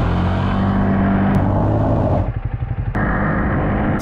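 450cc quad bike engine running at a steady speed while riding on a road, with wind and road noise. The sound changes abruptly about two seconds in, when the upper part drops away, and again near three seconds.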